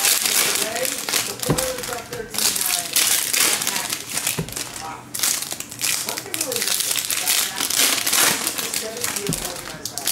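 Foil trading-card pack wrappers crinkling and rustling as packs are torn open and handled, in repeated bursts with short pauses.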